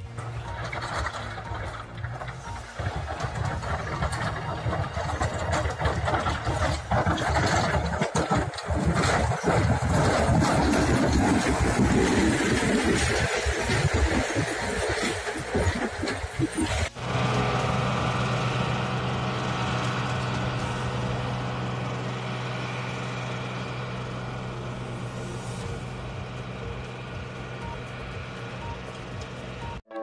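A heavy vehicle's engine running with rough, uneven noise. After a sudden cut about 17 seconds in, a steady engine hum takes over and slowly fades.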